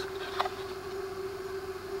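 A faint steady hum, with one light click of a clear plastic cassette box being handled about half a second in.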